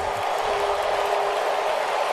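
Ballpark crowd cheering and applauding a home run, with a steady tone running underneath from about half a second in.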